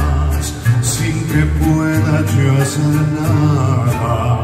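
Live mariachi band music in a concert arena, a slow ballad with long held bass notes and wavering higher melody lines, as the song gets under way.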